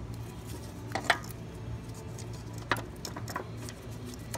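Light metallic clicks and clinks as a VW 2.8's camshaft and timing chain are handled and shifted on the open cylinder head, the loudest about a second in, over a low steady hum.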